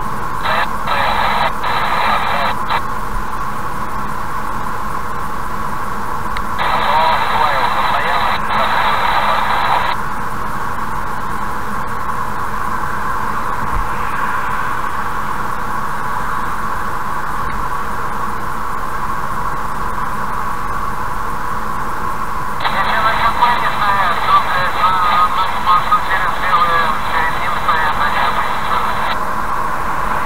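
Steady road and engine noise inside a car cabin at highway speed. Three stretches of thin, tinny radio voice chatter switch on and off abruptly: one at the start, one a few seconds later, and a longer one near the end.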